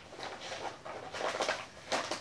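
Yellow padded paper mailer envelope being torn open by hand, in a series of short ripping and crinkling sounds.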